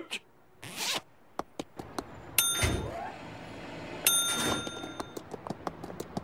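Cartoon sound effects: a swoosh, a few quick clicks, then a bell dinging twice, each ding followed by a short rushing swoosh.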